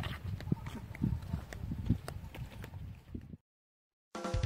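Footsteps of two people walking in flip-flops on a concrete road: an irregular patter of slaps and scuffs that cuts off suddenly about three and a half seconds in.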